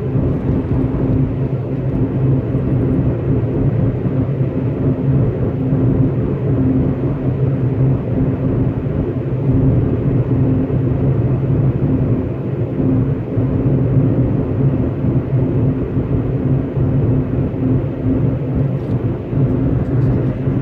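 Inside the cab of a Class C motorhome cruising steadily on a paved road: the Ford Triton V-10 engine's even drone with a low steady hum, over tyre and road noise.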